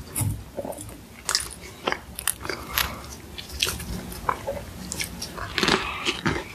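Close-miked eating of a meringue cookie with soft bread: crisp crackles of meringue crunching scattered throughout, with a louder, denser crunching bite near the end.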